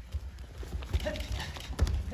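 Bare feet stepping quickly and thumping on gym mats as two attackers rush in and are thrown in an aikido freestyle, with several dull, irregular thuds.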